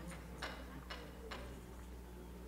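Faint, regular ticking, about two ticks a second, over a steady low hum.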